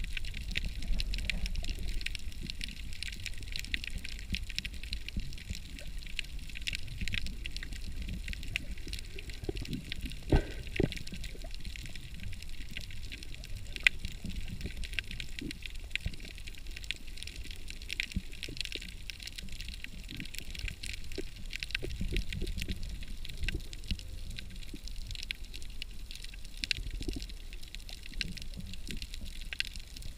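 Underwater sound picked up through a camera's waterproof housing: a muffled low rumble of moving water with a constant crackle of small clicks, and a few louder knocks now and then.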